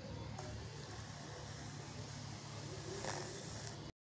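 Faint background ambience of a cricket broadcast: an even hiss over a steady low hum, with one faint knock about three seconds in. The sound cuts out completely just before the end.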